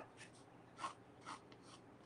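Faint strokes of a soft graphite pencil sketching on paper: a few short scratches, the clearest a little under a second in.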